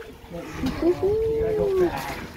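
A person's wordless exclamation: a few short vocal sounds, then one long drawn-out held "ooh" of about a second that rises slightly and falls back, an excited reaction to a clear stone just picked from the sifted gravel.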